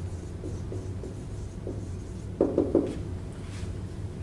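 Marker writing on a whiteboard: a run of short strokes, with a quick group of three louder strokes about two and a half seconds in, over a steady low hum.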